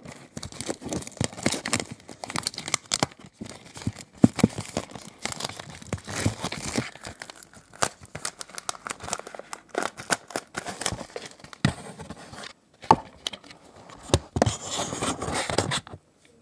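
Clear plastic shrink-wrap being torn and peeled off a CD by hand: a dense run of irregular crinkling and crackling, with a couple of short pauses near the end.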